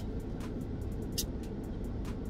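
Steady low rumble inside a parked car's cabin, with two faint short clicks about half a second and a second in.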